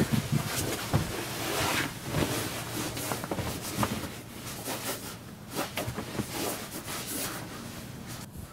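A person shifting and rolling over on upholstered bed cushions: irregular rustling and shuffling of body and clothing against the cushions, with small knocks, busier in the first half and gradually fading.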